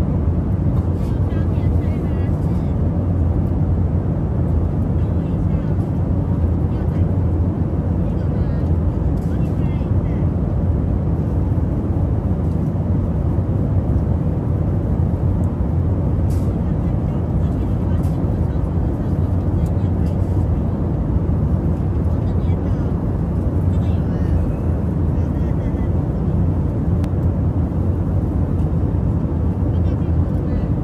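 Steady low rumble of airliner cabin noise in flight, even in level throughout, with faint voices in the background.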